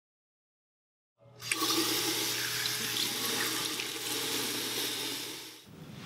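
Water running from a restroom sink faucet into the basin, with splashing as someone washes their face. It starts abruptly about a second in and cuts off shortly before the end.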